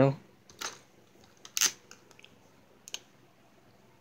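A few brief, sharp clicks and rustles from a hand handling a plastic toy ladder fire truck, spread out with quiet between them.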